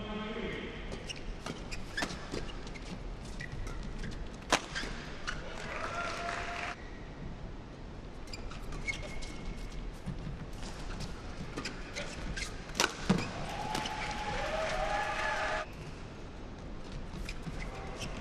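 Badminton rally: sharp cracks of rackets hitting the shuttlecock, several fast exchanges, the loudest hits about four and a half and thirteen seconds in, with short squeaks of players' shoes on the court mat.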